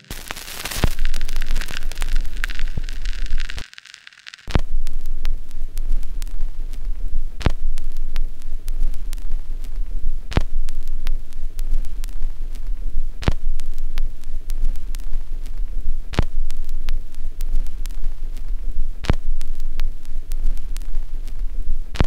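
Logo outro sound design: a bright rushing whoosh that cuts out just before four seconds, then a steady deep rumble with a fine crackle and a heavy hit about every three seconds, like a slow heartbeat.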